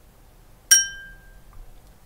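A small bell struck once, a bright ding about two-thirds of a second in that rings and fades within about half a second. It is the cue to pause and answer the question just asked.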